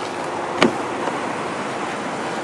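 Steady outdoor background noise, an even hiss with no engine note, and a single short click a little over half a second in.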